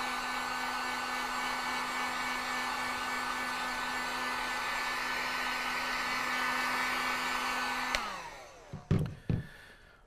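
Cheap handheld electric heat gun running, a steady fan whine over airflow hiss, heating the plastic holster shell. About eight seconds in it is switched off and the fan winds down, falling in pitch, followed by a couple of knocks.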